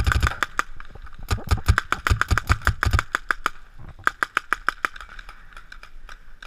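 A paintball marker firing rapid strings of shots, about eight a second, in three bursts, the longest in the middle.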